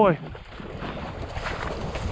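Wind rumbling on the microphone, with the rustle of movement through marsh grass.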